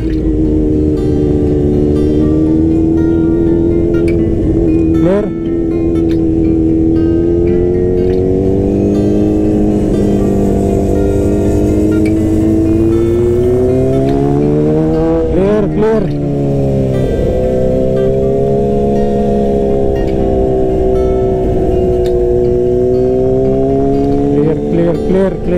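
Bajaj Dominar 400's single-cylinder engine running under way, heard from the rider's seat. Its pitch rises and falls slowly with the throttle, with a brief drop about five seconds in and a quick rise and fall around fifteen seconds in, over a low rumble of wind and road.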